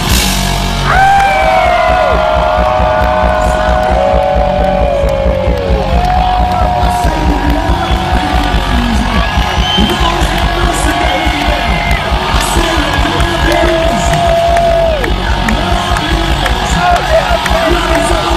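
A live rock band playing, recorded from inside the crowd: a steady drum and bass pulse under long, held melody notes that bend at their ends.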